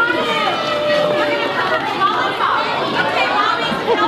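Chatter of several people talking at once, with high-pitched children's voices among them.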